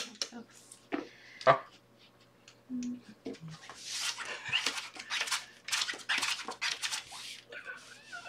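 Playing cards being dealt from a shoe and slid across a felt blackjack table: a quick run of swishes in the second half. Before that comes a sharp clack about a second and a half in, as a casino chip is set down.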